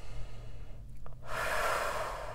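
A woman's long, audible breath starting just past a second in and lasting about a second, over a faint steady low hum.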